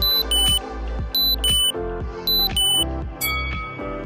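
Electronic interval-timer countdown: three short two-tone beeps about a second apart, then a longer beep about three seconds in, marking the end of a work interval. Background music with a steady beat plays underneath.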